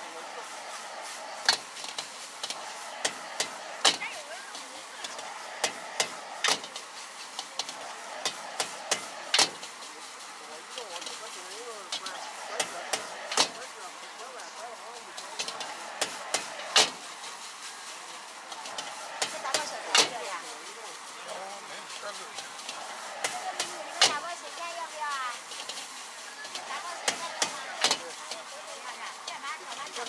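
Metal ladle and spatula clanking sharply and irregularly against a wok as fried rice is stirred and tossed, one to several strikes a second. Under it runs a steady hiss of the high gas burner and the food sizzling.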